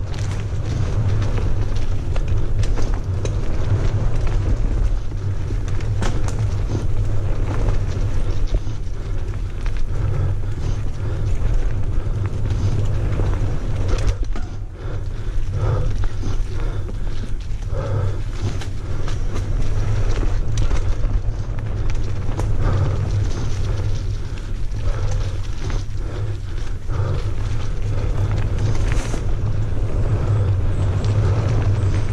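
Mountain bike descending a leaf-covered dirt singletrack, heard from a helmet-mounted camera: a heavy low rumble of wind on the microphone, the tyres rolling over dirt and leaves, and frequent rattles and knocks from the bike over bumps. It eases briefly about halfway through.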